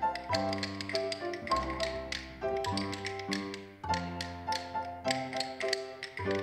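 Wooden rhythm sticks struck together in a steady, regular rhythm by a group of children, tapping along with a pitched instrumental melody and bass line.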